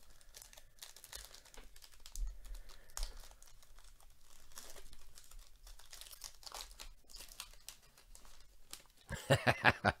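Plastic wrapper of a 2022 Topps Stadium Club baseball card pack crinkling faintly and irregularly as it is torn open and the cards are pulled out.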